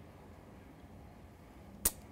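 Quiet room tone in a small room, broken near the end by a single short, sharp click.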